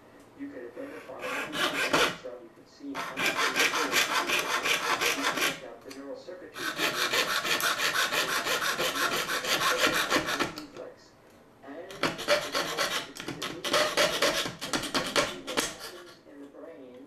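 Jeweler's saw with a fine blade cutting a thin strip of wood by hand, in quick, even back-and-forth strokes. It saws in four runs of a few seconds each, with short pauses between them.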